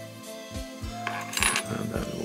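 Background music with held notes over a steady low beat, and a brief light metallic clinking about one and a half seconds in.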